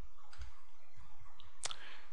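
A computer mouse button clicking, with one faint click about half a second in and a sharper click a little past one and a half seconds in.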